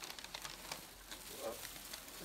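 Tissue paper and plastic packing crinkling and rustling as a leather jacket is lifted out of a cardboard box. There is a quick run of crackles in the first second, then softer rustling.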